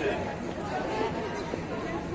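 Crowd chatter: many voices talking over one another at once, steady, with no single voice standing out.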